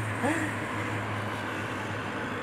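A steady low hum under faint background noise, with a brief murmur from a woman's voice about a quarter of a second in.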